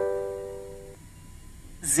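The ringing tail of a tram's electronic announcement chime: several bell-like notes, struck just before, fade out over about a second. A recorded stop announcement begins near the end.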